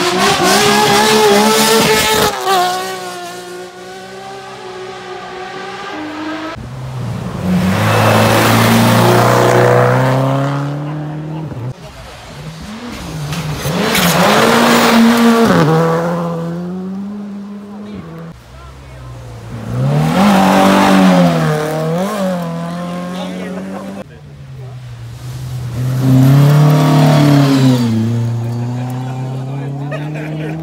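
Rally cars passing one after another at speed on a gravel stage, about five loud passes, each engine revving hard with its pitch rising and dropping through gear changes as the car approaches and goes by.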